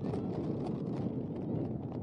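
Steady low rumbling noise of wind on an outdoor microphone, with scattered faint clicks and knocks.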